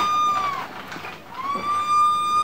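Rotating glass-jar candy stand (baleiro) squeaking on its pivot as it is turned by hand. Two long, high squeals: the first falls away about half a second in, and the second rises back just after one second and holds.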